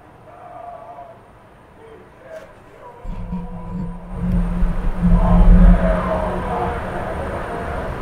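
Loud noise from the street cutting in suddenly about three seconds in: yelling over a deep rumble, loudest about halfway through.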